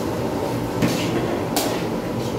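Metal ladle scraping and knocking against a large metal cooking pot while vegetables are stirred, two sharp strokes a little under a second apart, over a steady rumbling background noise.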